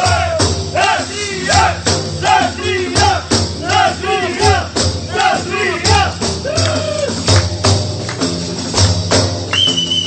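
Several def frame drums with jingles played together in a steady, driving rhythm, with a man's voice singing short, quickly repeated rising-and-falling phrases over them. A high held note comes in near the end.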